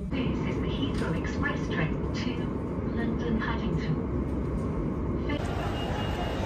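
Heathrow Express electric train running, a steady low rumble heard from inside the carriage, with faint voices over it. Near the end the sound changes suddenly to the open hubbub of a station concourse.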